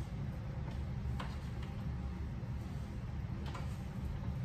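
A few faint, irregular clicks and light handling sounds from a cloth wiping down a carved wooden table by hand, over a steady low hum.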